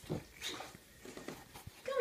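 A dog whimpering faintly.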